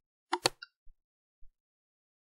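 Two quick computer mouse clicks close together about half a second in, with a few faint ticks around them.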